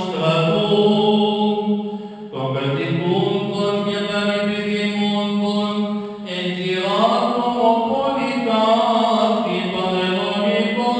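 A Greek Orthodox priest chanting a liturgical prayer solo in long, held notes, with two short pauses for breath and the melody rising about seven seconds in.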